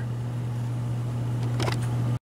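Steady low hum of workshop background machinery, with a faint brief sound near the end.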